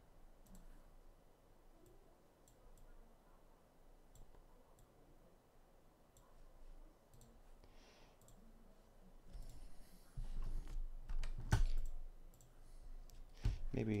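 Faint, scattered clicks of computer input at a digital-art workstation. In the last few seconds come louder rustling and a couple of sharp knocks close to the microphone.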